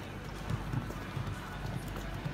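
Hoofbeats of a grey horse cantering on a sand arena: a run of dull, low thuds at an uneven beat.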